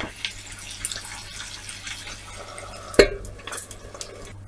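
Chicken adobo's soy sauce and vinegar liquid simmering in a frying pan, with small clicks of a wooden spoon, then a single sharp knock about three seconds in.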